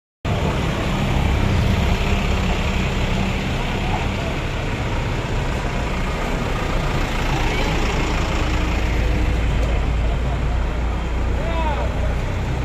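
Engines of several canvas-covered light trucks, an Isuzu Elf among them, running steadily as they drive past, a deep low drone that grows stronger in the second half over road noise.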